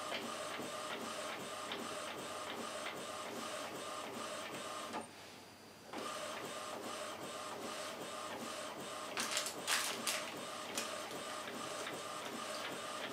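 Epson WorkForce WF-2010W inkjet printer printing a test sheet, its print-head carriage shuttling back and forth in a steady rhythm of about three strokes a second while it clears freshly fitted sublimation ink through. It goes quieter for about a second midway, then resumes, and a few louder clicks come near the end.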